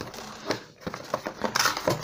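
Cardboard packaging being handled: rustling, scraping and light clicks as a cardboard insert is pulled up out of a box, with a sharper click about half a second in.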